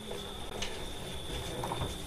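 Faint shuffling and handling noise with a soft click or two as a man is hauled up off a stage floor, over a steady thin high-pitched electrical whine.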